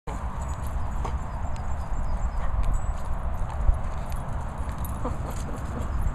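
Dogs moving about right beside a handheld microphone: scattered light clicks and taps over a steady low rumble on the microphone, with one sharper knock a little past halfway.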